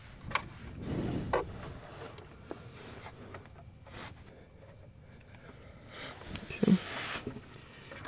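Small plastic two-pin wiring connector being handled and pushed together, with a few light clicks and some soft rustling of the wire.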